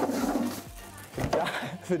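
Speech over background music, with a brief rustling noise near the start.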